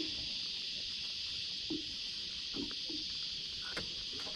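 Steady high-pitched chorus of insects, with a few soft knocks from handling at the side of the boat.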